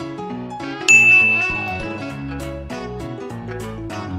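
A single loud bell-like ding about a second in, ringing out and fading over about a second, over background music.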